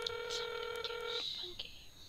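Ringback tone of an outgoing phone call: one steady ring that stops a little over a second in, followed by a few faint clicks.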